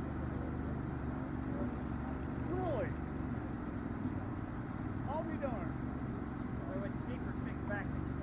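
Faint, indistinct talking by a couple of people a short way off, in scattered snatches, over a steady low hum.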